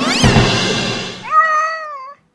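A drawn-out cat meow that rises and then slowly falls, over background music. Near the start, before it, comes a quick rising glide and a low thump.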